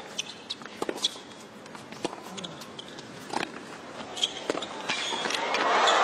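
Tennis rally on a hard court: sharp racket strikes on the ball every second or so, with shoe squeaks between them. About five seconds in, crowd cheering swells loudly as the point is won.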